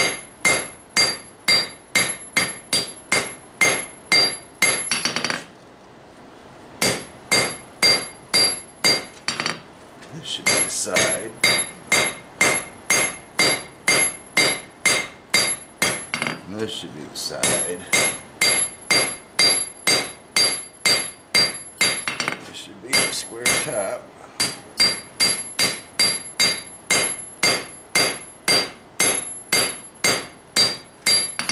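Hand hammer striking a red-hot railroad spike on a steel anvil, about two and a half blows a second with a few short breaks. Each blow rings with a high, bell-like anvil tone.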